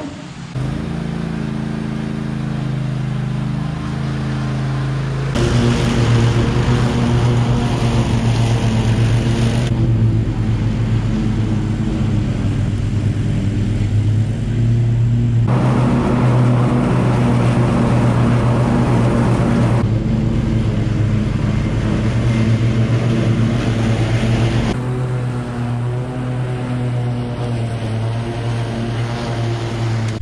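Toro TimeCutter SS5000 zero-turn riding mower running at full throttle while mowing tall grass with the blades engaged: a loud, steady engine note that shifts abruptly several times between a smoother and a louder, rougher sound.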